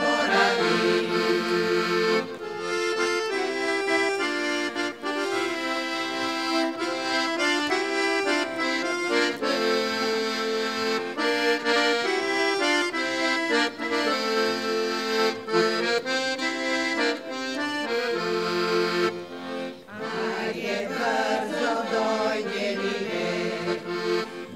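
A piano accordion plays an instrumental interlude in a Bulgarian folk song. A choir of women is singing at the start, stops about two seconds in, and comes back in about twenty seconds in.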